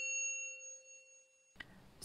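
The fading ring of a single bell-like intro chime, several clear tones dying away over about a second and a half, followed by a faint click.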